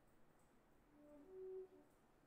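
Near silence, broken about a second in by a few faint held notes of a tune, the last one higher, each pitch steady.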